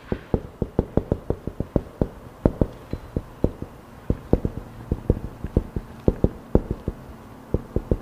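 A marker tapping and stroking on a whiteboard while Chinese characters are written, with quick, uneven knocks of the tip against the board at about four a second.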